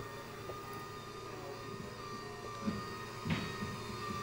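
Electric standing wheelchair's lifting actuators running as the chair raises its seated user towards standing: a low, steady hum with a couple of faint knocks near the end.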